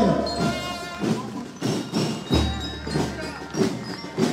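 Marching-band music with repeated drum beats, played outdoors for marching children.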